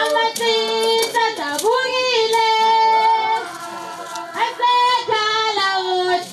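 A group of high female voices singing together, several pitches at once, with long held notes.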